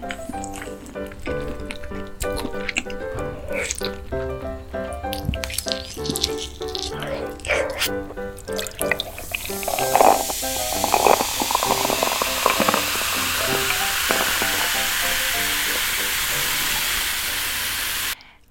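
Light background music with short eating clicks. About halfway through, cola is poured from a plastic bottle into a glass mug and fizzes with a steady hiss until the end.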